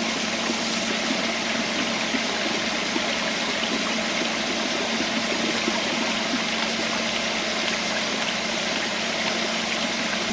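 Creek water pouring steadily over rock and into a wooden micro-hydro intake box, an even rushing splash.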